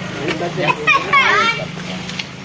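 Children's voices, with one child giving a high, gliding call about a second in, over a steady low hum.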